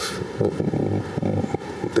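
A brief pause in a man's speech, with faint low voice sounds and steady studio room tone.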